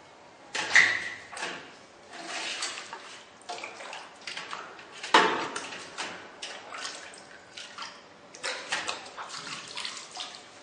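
Water sloshing and splashing as a stainless steel popsicle mold is dipped and moved in a large steel bowl of hot water, which loosens the frozen popsicles for release. Irregular splashes and knocks, the loudest about a second in and about five seconds in, the first with a brief ring.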